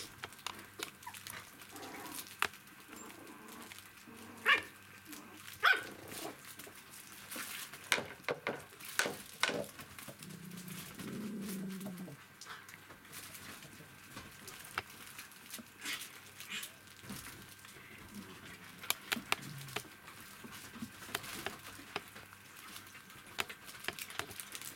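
Three-week-old poodle puppies playing: short, sharp yips, the loudest a little after four and near six seconds, and a longer, lower vocalization around the middle, amid scattered clicks and taps.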